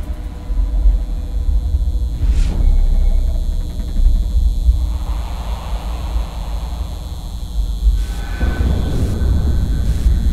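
Cinematic concert-intro sound design: a deep, steady bass rumble, with a brief swoosh about two and a half seconds in and swells of noise about halfway through and near the end.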